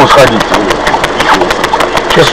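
Mostly men's voices talking inside a stopped car, with the car's engine idling steadily underneath.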